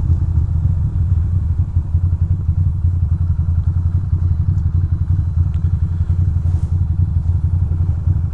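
2006 Ducati Monster 620's air-cooled L-twin engine running at low speed in slow traffic, a steady low rumble with a lumpy beat.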